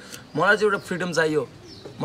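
A man speaking a short phrase, then a brief pause.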